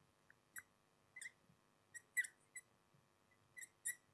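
Marker tip squeaking on a whiteboard while words are written: a series of short, faint, irregular squeaks as the strokes are drawn.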